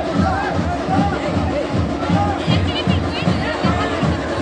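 A fast, steady drumbeat, about three beats a second, with a crowd of men shouting over it.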